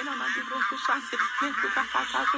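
A man praying aloud in tongues: a fast, unbroken run of syllables. It sounds thin, with little bass, as if played back through a small speaker.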